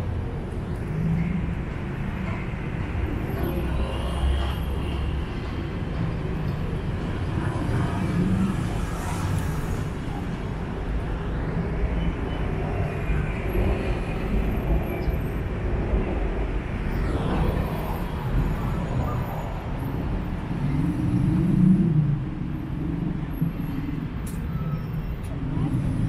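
Busy city road traffic: a steady low rumble of engines and tyres, with a few louder swells as vehicles pass, the loudest near the end.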